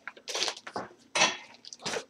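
Short clattering handling noises, about three brief bursts roughly a second apart.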